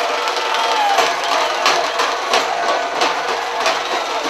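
Street procession crowd noise: many voices shouting over one another, with sharp percussive beats about every two-thirds of a second.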